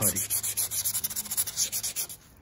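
Wet sanding by hand with about 320-grit paper over glazing putty on a 1976 Corvette's fiberglass hood underside: quick, rhythmic back-and-forth scrubbing strokes of wet abrasive on the filled surface.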